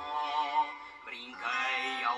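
Music: a boy singing a Portuguese song over instrumental accompaniment, with held notes that waver, a short break about a second in, then a new phrase.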